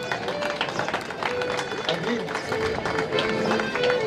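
Live folk dance music with long held notes, played as a costumed couple dances, over the chatter of an outdoor crowd.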